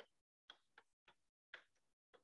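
Near silence, broken by a few faint ticks of chalk writing on a blackboard.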